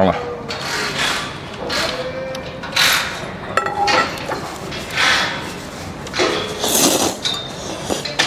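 A person slurping noodles and soup in several short noisy bursts, the loudest near the end. Around the middle a metal ladle clinks against a porcelain bowl.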